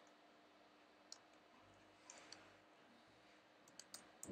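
Near silence with a few faint clicks of a computer mouse and keyboard, a small run of them near the end.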